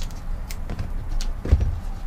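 Scissors snipping double-sided foam tape, with a couple of sharp clicks, then a low thump about one and a half seconds in as the tape roll is set down on a cushioned seat, over a steady low rumble.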